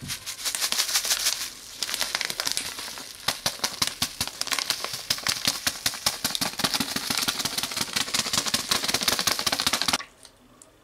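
A paper-foil sachet of dry seasoning is shaken hard over raw potato wedges in a plastic bowl: a fast, dense rattle of many quick ticks a second as the packet and its granules crackle. The rattle breaks off briefly about two seconds in.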